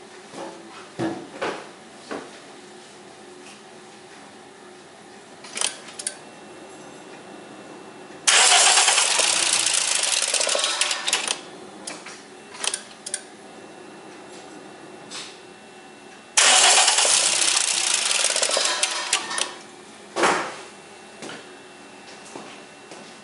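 Toyota VVT-i inline-four engine with its valve cover off, timing chain and camshafts exposed, started twice: about eight seconds in and again about sixteen seconds in it suddenly catches and runs loudly for around three seconds before fading away. Short clicks and knocks come in between.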